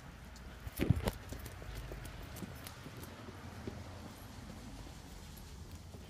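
Two sharp thumps about a second in, then a run of light, quick footsteps on hard steps with phone handling rustle.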